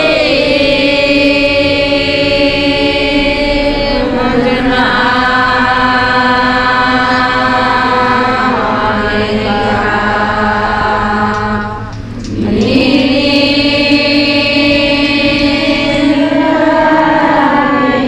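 A crowd of worshippers, mostly women's voices, chanting a prayer in unison on long held notes. The chant drops away briefly for a breath about twelve seconds in, then comes back with a rising slide into the next note.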